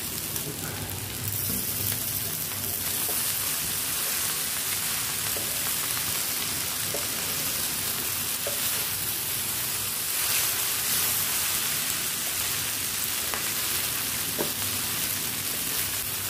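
Boiled noodles and vegetables sizzling in a hot non-stick wok on high flame, tossed and stirred with a spatula: a steady frying hiss with a few faint knocks of the utensil against the pan.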